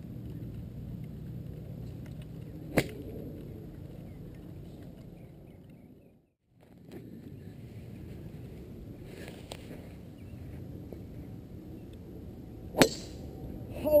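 Two golf shots, each a sharp click of the club face striking the ball. The first comes about three seconds in; the second, louder one with a short ringing tail comes near the end. Between them is a steady outdoor background hum, and midway the sound briefly drops almost to silence.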